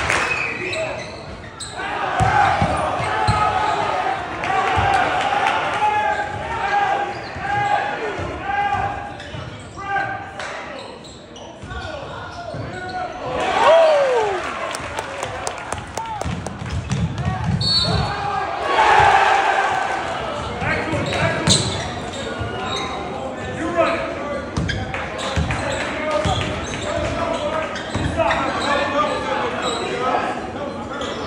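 A basketball being dribbled on a hardwood gym floor, repeated bounces, under the chatter and calls of players and spectators echoing in the gym.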